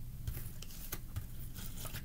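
Faint, scattered soft taps and rustles of tarot cards being handled and slid on a tabletop, over a low steady hum.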